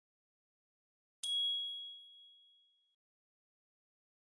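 Dead silence, then a single bright electronic chime about a second in, a ding that rings out and fades over about a second and a half: the channel's end-screen sound effect.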